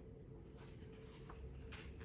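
A picture-book page being turned by hand: faint paper swishes and rustles, a few soft strokes spread over the two seconds.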